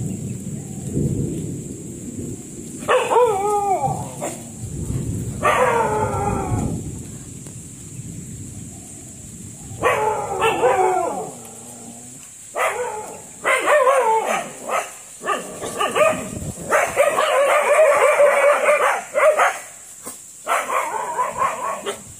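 A dog barking at a wild elephant. It gives a few long, drawn-out barks that fall in pitch, then a quick run of repeated barks in the second half. A low rumbling noise lies under the first several seconds.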